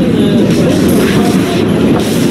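A train running through a station, a loud, steady rumble.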